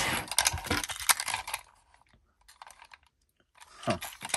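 Plastic and die-cast toy Mack trucks clicking and knocking as they are handled, a quick run of clicks in the first second and a half, then only a few faint ticks.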